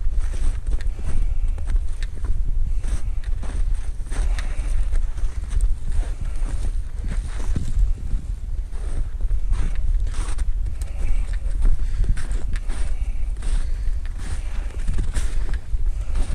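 Footsteps tramping through fluffy fresh snow and brush, with twigs and branches brushing past, in an irregular run of soft thuds and rustles. A steady low rumble on the microphone lies under them.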